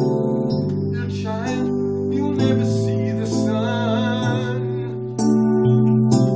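Electronic keyboard playing a slow piece: sustained chords with a wavering melody line above them, and a new, louder chord struck about five seconds in.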